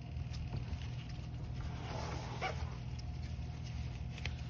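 A steady low hum of background room noise, with a faint short sound about two and a half seconds in.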